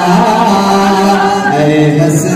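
A man's solo voice chanting an Urdu naat in long held notes with slow melodic turns, the pitch stepping down about one and a half seconds in.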